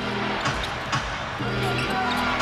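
A basketball being dribbled on a hardwood court, sharp bounces about twice a second, over arena music with held low notes.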